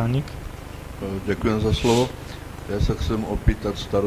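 Brief indistinct talking, not clear enough for the transcript, in short bursts over a steady low electrical hum.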